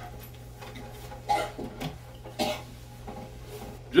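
A few short coughs from a person over a steady low electrical hum.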